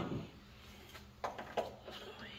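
Faint metallic clicks and clinks of a hand wrench on bolts and fittings, a few short ones a little over a second in, over a steady low hum.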